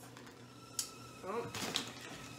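A kettle heating water for tea gives a faint, steady single-pitched tone that begins just after a click about a second in, the sign that the water is ready.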